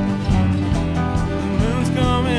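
Country-bluegrass band playing: strummed acoustic guitars, banjo, bass guitar and drums, with a sung vocal line coming in near the end.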